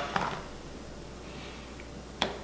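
Mostly quiet room tone with a low steady hum, and one faint tap just after the start as a solid lotion bar is set down on the countertop.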